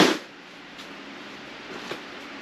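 A single short, sharp thump right at the start as an object or bag is set down, followed by faint handling noise.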